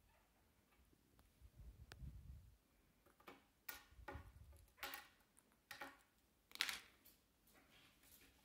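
Faint, scattered short clicks and taps of a kakariki's beak and claws on a wooden tabletop as it pecks and picks up small bits, about half a dozen between three and seven seconds in, the loudest near the end. A low rumble or two of handling comes before them.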